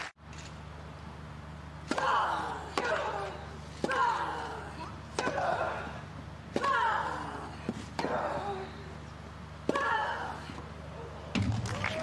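Tennis rally on a grass court: eight sharp racket strikes on the ball, roughly one every second to second and a half, each followed by the hitting player's loud grunt.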